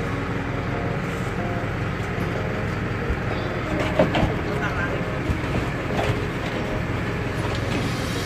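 Outrigger boat's engine running steadily with a low rumble, with a few sharp knocks about four seconds in.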